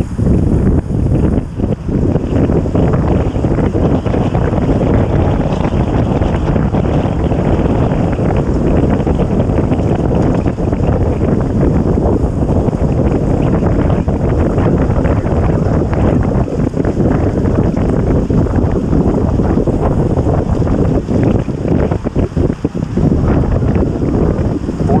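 Wind buffeting an action camera's microphone on a bicycle ridden at about 26 mph: a loud, steady, fluttering rush that keeps on throughout.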